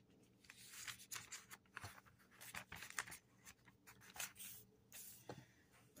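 Thin Bible pages rustling and crinkling as a page is turned and pressed flat by hand: a string of faint, uneven crackles.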